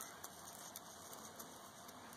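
Near silence: a faint, even background hiss with a few faint ticks.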